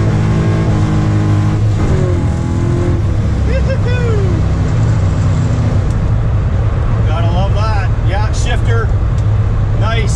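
LQ4 6.0-litre V8 in a 1981 Camaro Z28 pulling hard under acceleration through a T-56 six-speed manual. The engine note breaks for a gear change about two seconds in, then carries on at a lower pitch.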